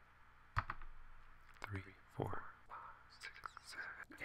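A single sharp computer-mouse click about half a second in, then a few faint, short bits of murmured speech and breath in a quiet room.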